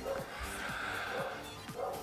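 Fingerstyle acoustic guitar cover playing faintly under the reaction, a few soft plucked notes over a low, even bed of sound.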